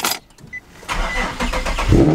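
Nissan 370Z's 3.7-litre V6 being started, heard from inside the cabin: the starter cranks for about a second, then the engine catches loudly near the end.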